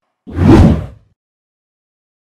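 Whoosh transition sound effect: one short, loud swell that fades out within about a second.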